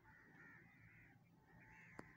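Near silence, with a few faint, distant bird calls, about three short ones in a row.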